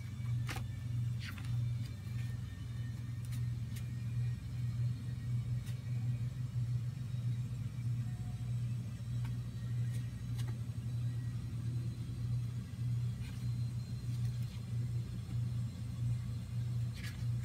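Steady low-pitched hum, with a few faint scattered clicks.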